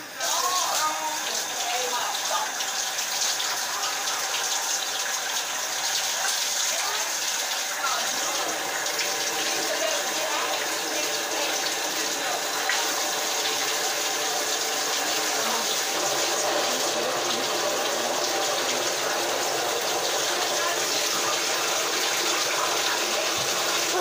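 Shower water running in a steady, even rush, turned on at the very start.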